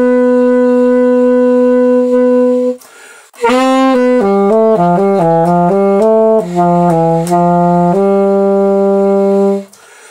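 Solo alto saxophone improvising jazz-style: a long held note, a breath about three seconds in, then a quick line of short notes that settles on a lower held note and breaks off just before the end.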